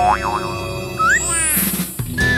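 Cartoon sound effects over background music: quick wobbling up-and-down pitch glides at the start, a short upward glide about a second in, then a sweep that climbs high in pitch.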